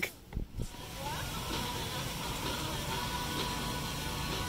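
A couple of brief low thumps, then faint steady background music.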